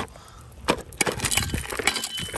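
Loose rocks and stone chips knocking and clattering against each other as they are moved on a rocky slope: one sharp knock at the start, then after a short lull a quick, dense run of clicks and knocks.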